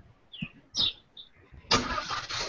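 Video-call audio glitching: a few short, high chirping blips, then a sudden burst of steady hiss near the end that carries on, as a remote participant's line opens up.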